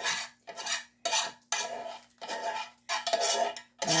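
A long coated spoon stirring soup and scraping against the sides of a metal cooking pot. There are about six strokes, each a little over half a second long, with short gaps between them.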